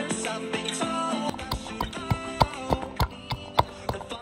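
A song with guitar plays throughout. From about a second in, a wooden pestle pounds garlic cloves in a wooden mortar, giving sharp knocks about three times a second that stand out over the music.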